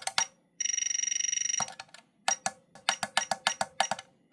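BC168 balance charger's buzzer beeping as its buttons are pressed. There is one steady beep lasting about a second, starting about half a second in, then a quick run of short beeps, about eight a second, as the target-voltage setting steps up.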